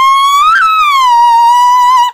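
A woman's voice holding one long, very high-pitched shriek, loud and steady, with a brief upward wobble about half a second in before it settles and cuts off.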